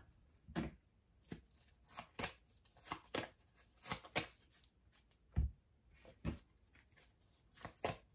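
Oracle cards being handled and drawn from a deck: scattered light taps and flicks of card against card and table, about a dozen over the stretch, some louder than others.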